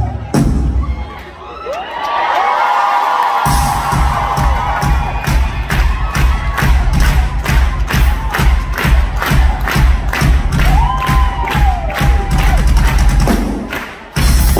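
Drum kit playing a steady, even beat while an audience cheers and shouts over it. The drums drop out for a couple of seconds near the start, leaving only the cheering, then come back in.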